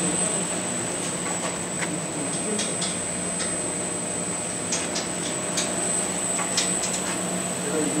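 Rotary sublimation heat press running: a steady machine drone with a constant high whine over it and a few light ticks scattered through.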